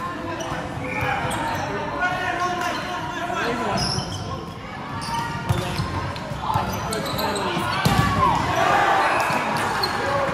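Volleyball being hit back and forth in a large, echoing sports hall: sharp thuds of the ball being struck, the loudest about eight seconds in, over a mix of players' calls and onlookers' voices.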